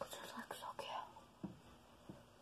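Faint whispering, with a few small clicks as an eyeshadow compact is handled.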